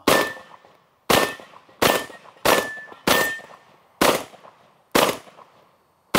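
Benelli M2 LE semi-automatic shotgun firing buckshot in quick succession, seven shots about a second or less apart. A steel target rings after each of the first five shots.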